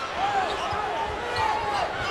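Basketball shoes squeaking on a hardwood court, several short squeaks in a row, over the steady noise of an arena crowd, with a ball being dribbled.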